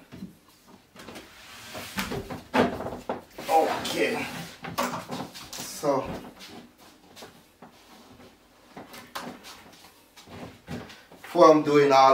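Knocks and scrapes of a wooden flat-pack shelving frame being handled and tipped over onto its side, several short sharp knocks in between, with a man's low voice in the middle.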